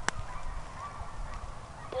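Faint calls of a pack of hunting hounds giving tongue in the distance, after a sharp click right at the start.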